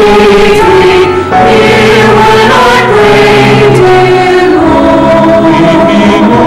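A church choir singing in parts, holding long notes that change every second or two.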